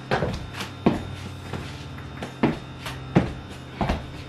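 Stiletto-heeled boots stepping on a hardwood floor, several heel taps at an uneven walking pace. The taps are dull rather than sharp clicks, which might be because of the rubber heel tips.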